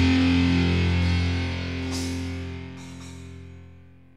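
The closing distorted electric-guitar chord of a heavy metal song, held and ringing out, fading steadily away to nothing. Two short cymbal hits sound about halfway through.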